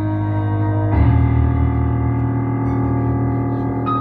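Band's instrumental intro: sustained, droning chords held steady. About a second in, a deeper, louder chord comes in and holds.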